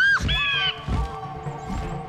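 A cartoon character's short, rising cry at the start, over background music with a few low thuds.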